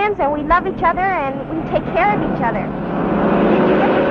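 A woman's singing voice with vibrato. About two and a half seconds in it gives way to a passing road vehicle, its engine and road noise swelling louder.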